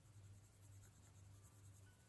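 Near silence: very faint scratching of a Faber-Castell Polychromos coloured pencil shading on paper, over a low steady hum.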